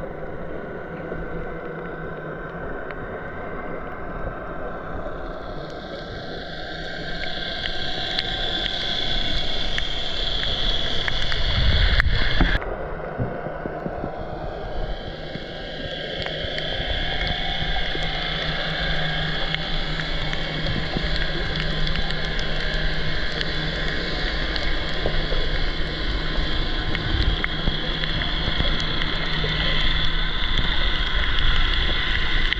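Underwater hum of a boat's engine and propeller running in the distance: a steady drone whose tone slowly shifts as the boat moves. A short knock about twelve seconds in.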